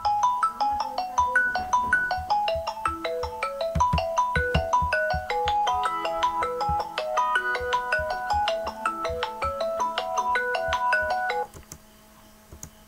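A mobile phone ringing with a melodic ringtone, a quick tune of short bell-like notes at about four a second. It cuts off abruptly shortly before the end, over a faint steady hum.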